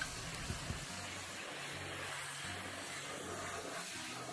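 Pressure washer spraying water onto a plastic boat deck: a quiet, steady hiss with a faint low hum beneath.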